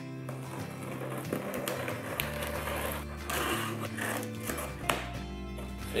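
Background music with held bass notes, over scissors slitting the packing tape on a cardboard box, with the rustle of the cardboard flaps and a few sharp clicks.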